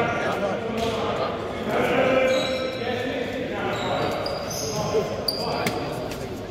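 A basketball bouncing on the court of a sports hall, with two sharp knocks near the end, amid players' voices echoing in the large hall.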